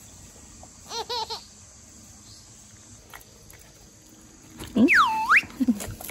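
A short high-pitched laugh of three quick notes about a second in. Near the end comes a high, whistle-like call that dips in pitch and rises back.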